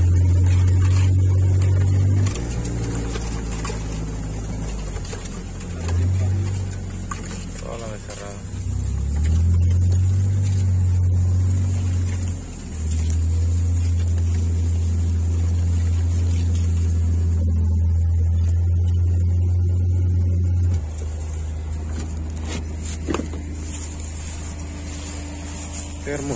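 Side-by-side utility vehicle engine running at low speed, a steady low drone that grows louder and softer several times and drops back for the last few seconds.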